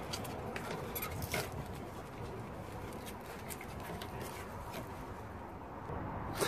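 Faint, scattered clicks and rustles of a car's wiring loom being handled and eased out of its plastic retaining clips by gloved hands, over a low steady hiss.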